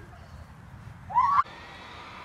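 A child's short, high squeal about a second in, rising in pitch and cut off sharply, followed by a steady faint hum.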